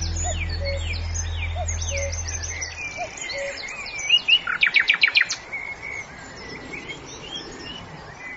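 Several small birds chirping and calling, with a fast trill of repeated notes about four to five seconds in that is the loudest part. Under the first three seconds a low held tone fades away.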